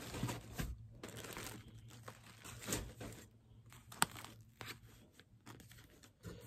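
Faint rustling and crinkling of plastic-bagged yarn skeins and a cardboard box being handled, with a few light taps, the sharpest about four seconds in.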